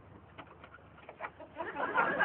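A few faint clicks and handling sounds at a small car's door, then a murmur of voices fading in near the end.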